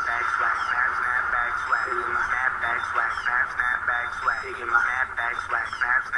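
A rapid, unbroken run of short, tinny vocal syllables, narrow and band-limited as if heard through a radio, most likely chopped, filtered vocals in the video's backing track.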